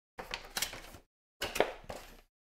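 Crinkling and clicking of trading-card packaging being handled, in two short bursts, the second starting about a second and a half in.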